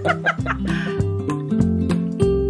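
Acoustic guitar music with a run of plucked notes, after a woman's brief laugh at the start.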